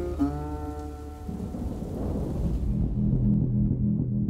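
Soundtrack music: a held guitar-like chord rings out in the first second, then a roll of thunder with rain swells and fades. A low pulsing synth beat begins in the second half.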